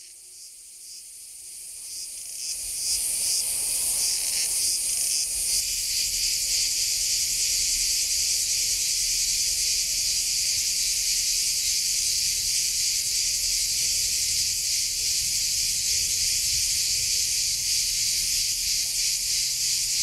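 A chorus of insects buzzing, high-pitched and dense. It swells in over the first few seconds with a pulsing rhythm, then settles into an unbroken drone.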